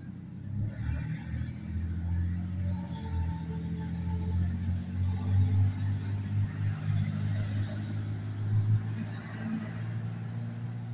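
Low, steady motor-vehicle rumble that rises and falls a little, with no clear events standing out.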